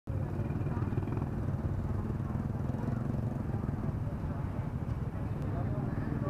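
Several motorbike engines idling together in a steady low rumble, with people talking among them.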